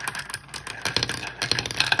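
Glass marbles rolling and clattering through a plastic marble run, circling a funnel bowl and knocking down a pinned track in a quick, uneven run of clicks and rattles.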